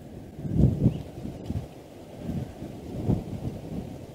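Wind buffeting the microphone: low, irregular rumbling gusts that surge and fade several times.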